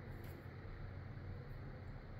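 Quiet room tone: a steady low hum under a faint even hiss, with a couple of faint brief ticks, once just after the start and again about a second and a half in.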